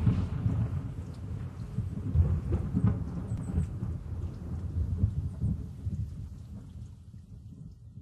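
A low, irregular rumble that fades out over several seconds at the close of a metal track, with faint scattered crackles above it.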